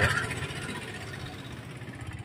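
A heavy truck's diesel engine idling steadily, growing slightly quieter.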